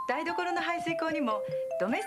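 A woman speaking Japanese over advert music, with a bright chime ringing out right at the end.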